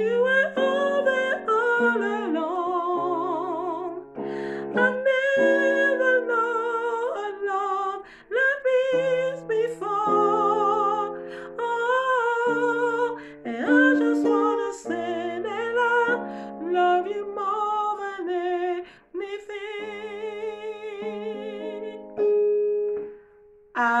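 Gospel praise and worship song with sustained keyboard chords, and a woman singing the soprano harmony line along with it, her voice wavering with vibrato.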